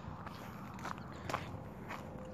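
Footsteps on gritty pavement and loose gravel, a sharp crunch about every half second.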